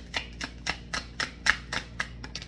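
A deck of tarot cards being shuffled by hand: quick, regular card slaps, about three or four a second, with one louder slap past the middle.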